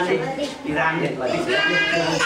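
Several people talking over one another, with a high-pitched voice calling out near the end.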